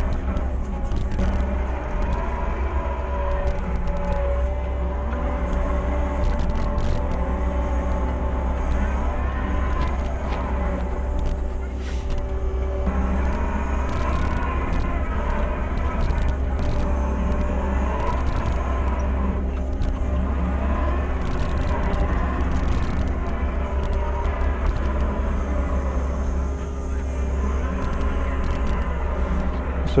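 Compact track loader's engine running steadily under load, heard from inside the operator's cage, its pitch shifting with throttle and hydraulic load. Scattered short knocks and rattles from the machine and its bucket come through.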